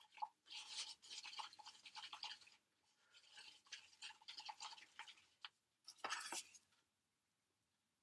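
Faint, quick, scratchy scraping of a wooden stirring stick mixing a batch of stone-casting mix in a disposable mixing cup. It comes in three spells with short pauses and stops about seven seconds in.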